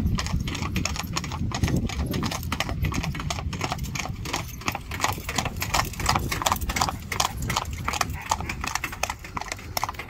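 Hoofbeats of a pair of Friesian horses trotting on asphalt while pulling a carriage: a fast, continuous run of clip-clops, clearest as they pass in the middle.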